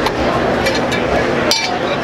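Metal anchor parts clinking as a breakdown dinghy anchor is handled and taken apart, a few light clicks and one sharp clink about one and a half seconds in, over a steady murmur of background voices.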